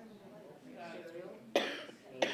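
Faint murmured voices, then one sharp cough about one and a half seconds in.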